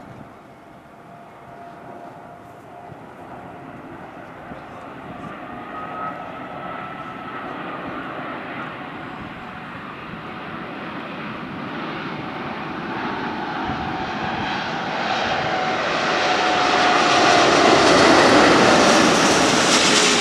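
Airbus A380's four turbofan engines, heard as a steady jet noise with a faint whine, growing steadily louder as the airliner flies in low with its gear down and passes overhead, loudest near the end.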